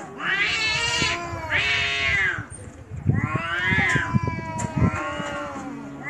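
Two cats caterwauling at each other in a territorial standoff: four long yowls that rise and fall, over a lower, steadier moaning yowl.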